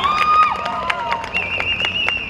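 Football players shouting and cheering just after a goal, with short high calls and a few sharp claps. A long, high, wavering whistle-like tone starts a little past halfway.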